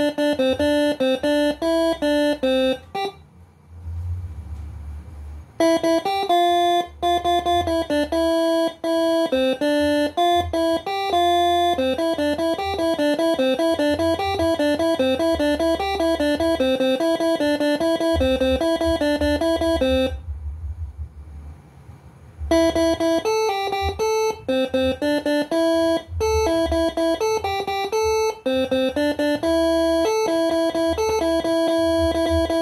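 Multi-trumpet 'telolet' air horn set driven by a six-channel melody module, playing quick tunes note by note. There are two short pauses, about three seconds and twenty seconds in.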